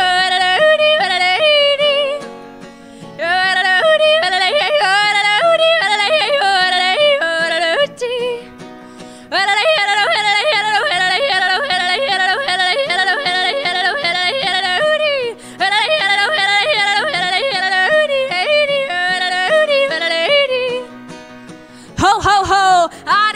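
A woman yodeling over strummed acoustic guitar, her voice leaping quickly up and down in pitch in a long country yodel, with a few short pauses between phrases.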